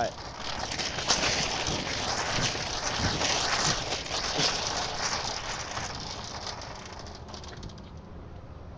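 Rustling, crackling noise on a phone's microphone as the phone is moved about in the hand outdoors, loudest through the middle and fading near the end.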